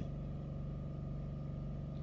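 A steady low hum with a fainter high tone above it, unchanging throughout: continuous background hum with no other event.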